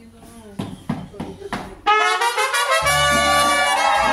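A mariachi band strikes up suddenly about halfway through, trumpets playing loud held notes. Deep bass notes from the guitarrón come in a moment later. Before the music there are low voices and a few knocks.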